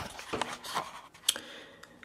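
A handful of light clicks and knocks from handling and movement while a door is pushed open, the sharpest one just past halfway.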